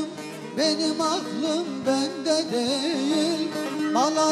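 A man singing a Turkish folk song (türkü) in a long, ornamented, wavering melodic line, over bağlama (saz) accompaniment with its steady drone notes.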